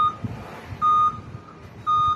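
Short electronic beep at one steady pitch, repeating about once a second.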